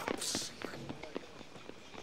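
Breathy children's laughter and shouts in the first half-second, then a few light footfalls on a patio under faint background voices that fade quieter.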